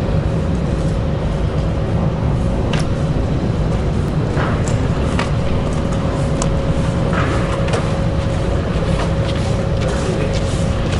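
Steady low rumble of city street traffic, unbroken throughout, with a faint steady hum over it and a few light ticks.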